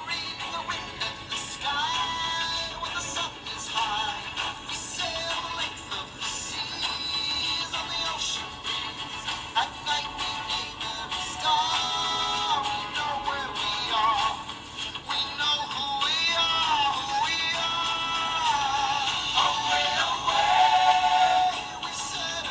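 A song with a processed, synthetic-sounding singing voice carrying a melody over music.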